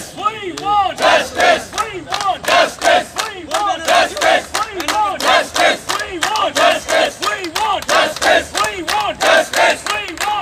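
Crowd of protesters chanting a slogan together, the same short shouted phrase repeating in a steady, even rhythm.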